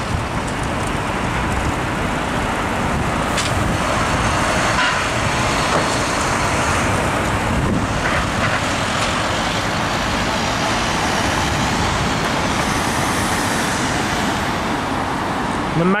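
Steady road traffic noise from cars driving through a city intersection.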